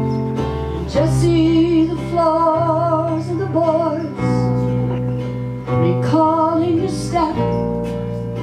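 A slow folk song played on strummed acoustic guitar over held upright bass notes, with a wavering melody line above it in two phrases, about a second in and again around six seconds in.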